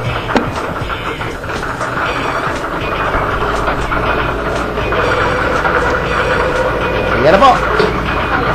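Bingo ball draw machine running: a steady rushing of its air blower with balls tumbling and clicking inside the globe as the next ball is drawn. A voice calls out the letter near the end.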